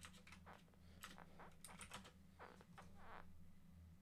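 Faint computer keyboard typing: quick runs of key clicks as a search is typed, over a low steady hum.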